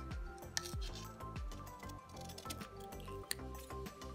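Background music with scissors snipping through paper: several sharp, irregular clicks of the blades closing.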